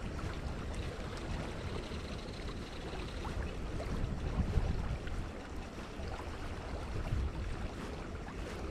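Wind buffeting the microphone, a steady uneven rumble, over the rush of flowing creek water.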